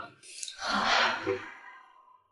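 A woman's short breath, then a drawn-out murmured "mm" that fades away.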